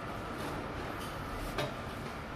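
Steady indoor background noise with a faint steady hum, and one short clink of a serving spoon against a steel buffet tray about one and a half seconds in.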